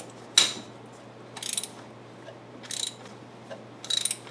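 Socket ratchet wrench worked in short strokes on a bolt at the crankshaft harmonic balancer: four brief bursts of pawl clicking about every second and a half, the first the loudest.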